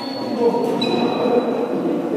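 Many young voices chattering and calling, echoing in a large sports hall, with a few long, steady high-pitched squealing tones over them.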